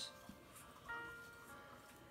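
Faint background music: a few soft held notes, with no other clear sound.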